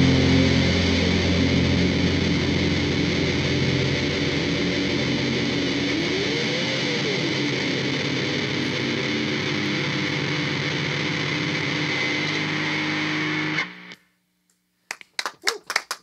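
A live band ends a song with a sustained, distorted electric guitar wash through effects pedals, its low end thinning out partway through. It cuts off abruptly near the end, and after a moment of silence a few sharp claps sound.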